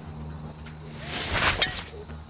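A golf driver swung at a teed-up ball: a rising swish of the club that ends in a sharp crack of impact about a second and a half in.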